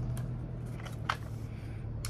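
Light handling noise from a G&G ARP 556 2.0 airsoft rifle being lifted and turned in the hands: two small clicks, the sharper one about a second in, over a steady low room hum.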